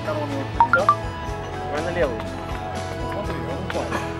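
Background music with sustained tones and a low beat, with a voice over it and a few short high beeps just under a second in.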